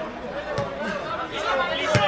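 Voices calling out on a football pitch, with a sharp knock of a football being kicked near the end and a lighter knock about half a second in.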